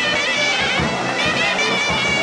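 Hindu devotional aarti music: a reedy, wavering melody over steady drum strokes.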